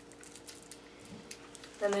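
Faint, scattered small clicks and crinkles of a plastic candy wrapper being handled, under a steady low hum.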